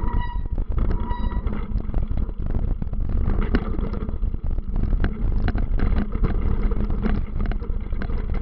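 Steady low rumble with frequent short rustles and scrapes as tall grass brushes against the moving camera.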